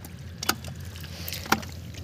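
Wet mud and shallow water being disturbed: two sharp splats about a second apart, with fainter ones between, over a low steady rumble.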